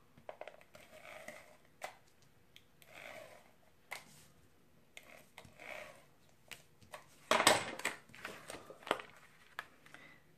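Tape runner drawn along a sheet of cardstock in three short rasping strokes, with light clicks of paper and tool handling. A louder paper rustle comes about seven and a half seconds in as the sheet is picked up and laid down.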